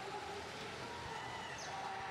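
Faint, steady background noise of a competition arena, the mixed sound of the crowd and the robots at work on the field heard from a distance, with no single sound standing out.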